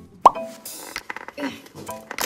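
A short, quickly rising 'plop' pop sound effect about a quarter of a second in, the loudest thing heard. It is followed by brief hissy bursts and light background music with a few short tones.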